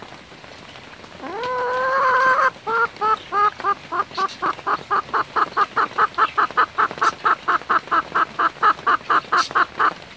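A Silkie hen calling close up: one drawn-out, slightly rising call about a second in, then a fast, even run of short clucks, about four or five a second. These are the complaining calls of an unhappy hen.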